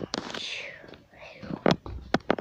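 Whispered, breathy voice sound that glides downward in pitch, followed by a fainter second one, with a few sharp clicks near the end.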